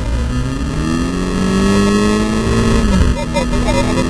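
Volkswagen Scirocco Cup race car engine heard from inside the cabin, revving up under hard acceleration. The pitch drops sharply near three seconds in as it shifts up a gear, then climbs again. The onboard recording quality is poor.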